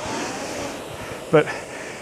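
Concept2 RowErg's air-resistance flywheel whooshing as one drive spins it up, a rushing sound of a little over a second that then eases off. One short spoken word follows about a second and a half in.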